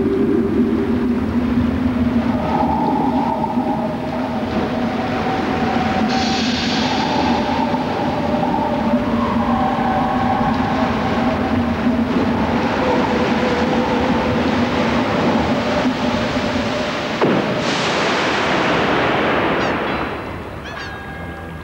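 Sea surf: a steady rushing wash of waves under a few held, slowly shifting low tones. A click is followed near the end by a louder, brighter wave crash.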